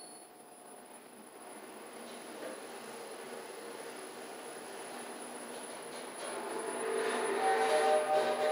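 ThyssenKrupp glass elevator car travelling up its shaft, a steady running hum with faint steady tones that grows louder over the last two seconds as the car reaches the next floor.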